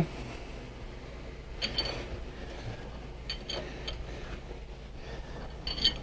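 A few light metallic clicks of a wrench on the crankshaft bolt as a four-cylinder motorcycle engine is turned over slowly by hand, over a low steady hum.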